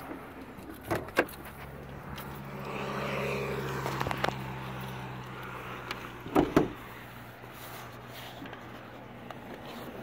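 Hood release pulled, with two sharp clicks about a second in, then a louder clunk a little past halfway as the hood is lifted and its safety catch is released. A steady low hum runs under it.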